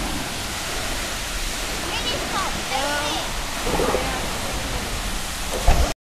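Steady rush of water pouring from an outflow pipe into the lake, with faint voices in the middle and a short thump near the end.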